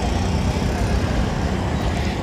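Steady low engine rumble and road traffic noise from a tow truck running close by and the street around it.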